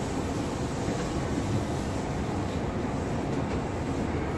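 Hankyu 7000 series electric train heard from inside the car, running with a steady low rumble.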